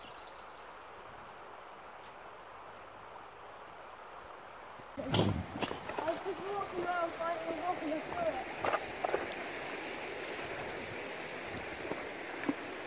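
Faint outdoor background for about five seconds, then a shallow stream running over rocks, with children's voices over it and a few knocks.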